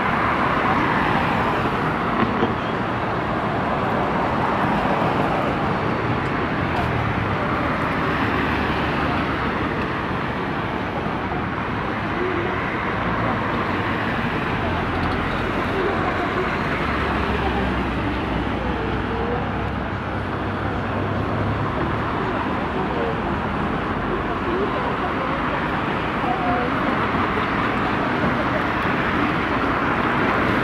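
Steady roadside traffic noise mixed with indistinct chatter of people nearby. A deeper low rumble swells for a few seconds past the middle.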